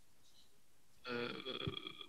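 A short silence, then about a second in a man's drawn-out hesitation sound, a held 'eee', as he searches for his next word.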